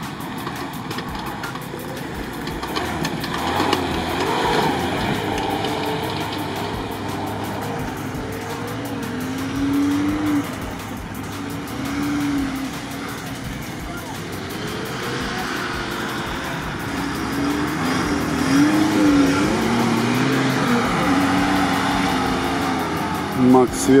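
Lada Niva 4x4 engines revving hard in mud, the pitch rising and falling again and again as the drivers work the throttle to push through the bog.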